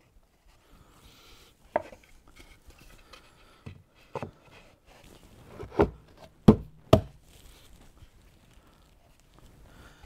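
Plywood speaker-cabinet panels and braces being set down and knocked into place during glue-up: a scatter of sharp wooden knocks, the loudest two close together about two-thirds of the way through.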